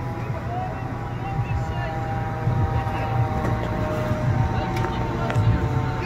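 Fire engine's diesel engine running with a steady low rumble, with a steady higher whine over it.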